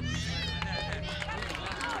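A short break in the music filled with several voices calling out, most of them in the first second.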